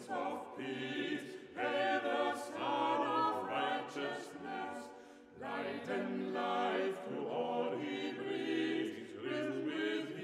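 Small mixed group of male and female voices singing a cappella in harmony, a sacred or Christmas part-song. A phrase ends about five seconds in and a new one begins.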